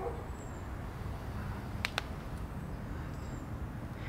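Outdoor background noise: a steady low rumble, with a couple of faint clicks about two seconds in and two faint high chirps, one near the start and one near the end.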